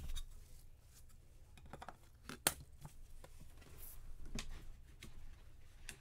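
Light clicks, taps and rustles of gloved hands handling a trading card in a clear plastic magnetic holder and setting it down on a mat, with one sharper click about two and a half seconds in.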